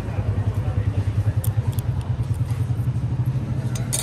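A low, steady engine rumble with a fast pulse, with a few light clicks about a second and a half in and near the end.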